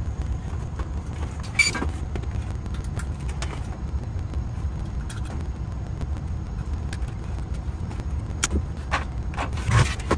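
Clicks and light metallic clinks of a metal LED light fixture being handled and fitted against overhead wood framing, with a sharp ringing clink about one and a half seconds in and a louder knock near the end. A steady low rumble runs underneath.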